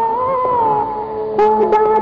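Instrumental interlude of a 1960s Bollywood film song: a sustained melody line that slides between notes over an orchestral backing. A sharp accented entry comes about one and a half seconds in.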